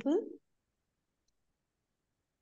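The end of a spoken question, then silence from the video call.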